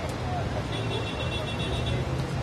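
Outdoor street ambience: a steady low traffic rumble under the voices of people standing around.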